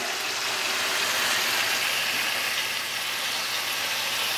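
Steaks frying with a steady sizzle, an even hiss with no breaks, over a faint constant low hum.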